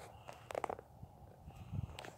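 Faint handling noise from the camera being moved and set down: a few soft clicks and knocks about halfway through and a brief low rustle near the end, over quiet outdoor background.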